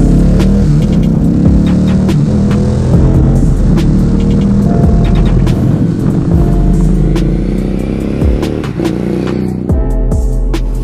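Harley-Davidson Street 750's liquid-cooled Revolution X V-twin engine on a ride, revving up and dropping back several times as it accelerates. A music track plays underneath.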